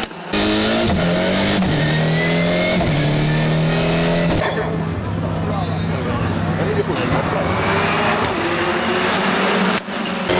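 A pack of rallycross Supercars, turbocharged four-cylinder engines, accelerating hard off the start line. The engine note climbs in steps as they change up through the gears, then holds a steady high rev as the pack runs flat out down the straight.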